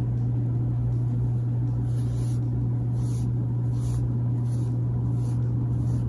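A steady low hum, with a few faint soft rustles of wool yarn being drawn through crocheted stitches by a tapestry needle.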